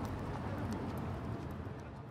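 A steady background noise bed with faint scattered clicks, slowly fading down near the end.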